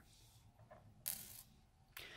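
Small metal parts of an ultrasonic lens motor handled by hand: one brief, light scrape or clink about a second in, otherwise near silence.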